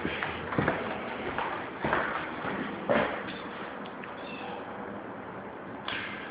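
Footsteps of shoes on a ceramic tile floor, a few sharp steps about a second apart that die away about four seconds in, over faint room hiss.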